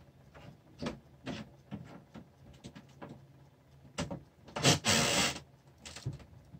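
Handling noise from a die-cast toy car being turned over in the fingers close to the microphone: scattered soft rubs and clicks, then a longer, louder rub near the end.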